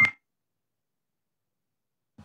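A high electronic tone from the meeting-room microphone system, rising in level, cuts off with a click right at the start. It sounds like a brief feedback squeal. Then dead silence as the audio feed drops out.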